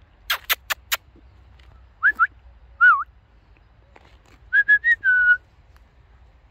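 Four sharp clicks in quick succession, then a person whistling to call a German Shepherd back: a short two-note whistle, a wavering note, then a run of short notes ending in a longer falling one.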